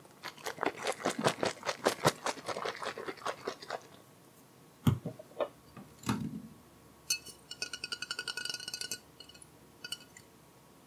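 Close-miked crinkling and crackling of a translucent plastic item squeezed in the hands, quick and dense for about four seconds. Then two dull thumps, and near the end a fast pulsing, ringing rattle lasting about two seconds.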